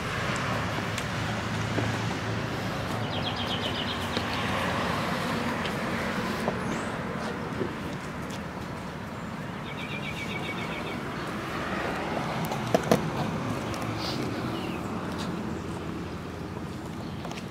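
Road traffic going by, a car passing with a steady rumble and tyre noise, while a bird gives a short rapid trill twice, about three seconds in and again about ten seconds in. A couple of sharp clicks come near the end.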